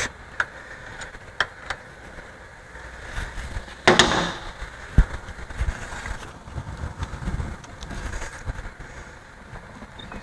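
Scattered metal clicks and knocks, with a short scrape about four seconds in, as the pellet mill's die is turned by hand and its rolls adjusted against it.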